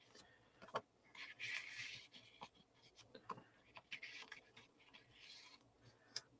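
Faint rustling and sliding of cardstock tags being drawn out of and tucked back into a paper pocket, with a few light taps of paper on paper.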